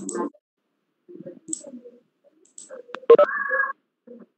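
Scattered clicks and faint stray sounds coming over a video-call line, with a sharp click about three seconds in followed by a short electronic two-tone beep.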